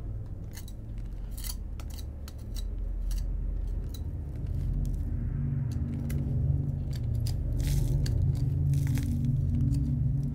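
Irregular small clicks and scrapes of hands rummaging through loose debris in a hole under the floorboards, over a steady low hum that grows louder about halfway through.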